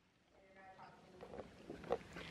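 Silence for about half a second, then faint voices talking at a distance.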